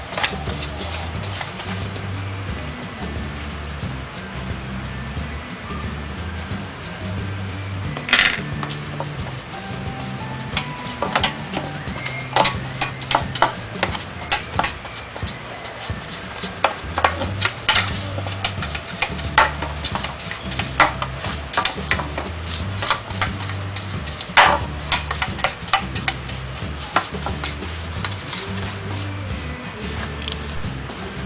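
Background music with a steady stepping bass, over irregular scraping and light clicking of a silicone pastry brush spreading margarine around a round aluminium llanera, with a sharper knock about eight seconds in and another near 24 seconds as the brush strikes the pan.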